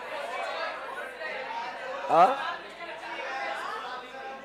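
A class of students calling out answers at once: a hubbub of many overlapping voices. One man's louder voice says a short "haa" about two seconds in.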